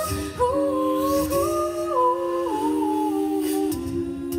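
Six-voice a cappella group singing, several voices holding chords that change in steps while the top line steps downward.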